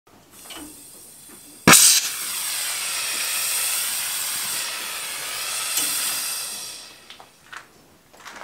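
Oxy-fuel cutting torch lit off a gas saver valve's pilot light: a faint gas hiss, a sharp pop of ignition, then the flame burning with a steady loud hiss. The hiss dies away near the end once the torch is hung on the gas saver's lever, which shuts off the gas.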